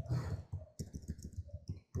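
Computer keyboard keys clicking as a word is typed: a quick, irregular run of keystrokes.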